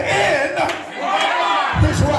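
A preacher's raised voice through a microphone, swooping up and down in pitch, with the congregation's voices calling out around it; a low thump near the end.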